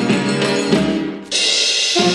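A 1950s dance orchestra playing a baião, with the drum kit to the fore. Just past a second in the band breaks off briefly, then comes back in with a cymbal crash.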